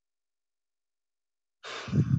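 Silence, then near the end a person's audible sigh: a breathy exhale running into a short low voiced sound.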